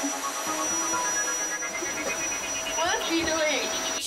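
Steady hiss with a thin, high, constant whine and faint voices rising briefly about three seconds in: the noisy sound track of handheld home-video footage.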